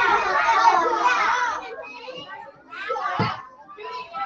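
Many young children chattering at once, thinning to a few separate voices after about a second and a half, with a short low thump about three seconds in.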